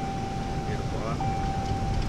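Road and engine noise inside the cab of a moving Ram pickup truck. A steady high-pitched tone runs through it and breaks off briefly about a second in.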